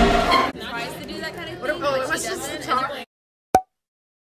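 Loud music stops about half a second in, giving way to people chattering indistinctly in a crowd. The sound cuts off abruptly to silence at about three seconds, with one short click soon after.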